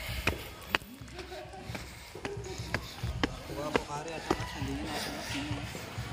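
Footsteps on concrete steps and paving, a sharp tap about twice a second at a walking pace, with people talking in the background.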